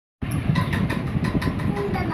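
Intro sound effect: a steady rumbling noise with a fast, even run of clicks, about six a second, starting suddenly just after the start.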